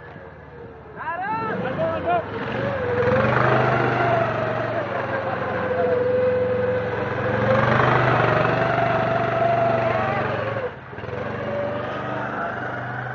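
Baja SAE buggy's small single-cylinder Briggs & Stratton engine revving as the buggy accelerates across the snow. The pitch rises and falls with the throttle, and the sound drops sharply near the end as the buggy lets off or moves away.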